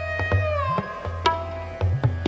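Sarangi holding a high note, then sliding down to a lower one about two-thirds of a second in, over tabla. Sharp strokes on the tabla mix with the deep ringing bass of the left-hand drum, which bends upward in pitch just before one second.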